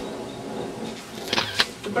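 Room noise with faint murmuring voices in a pause between speech, and two short hissing sounds about a second and a half in.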